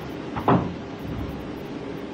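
A single short knock or thump about half a second in, over steady room tone picked up by the bench microphone.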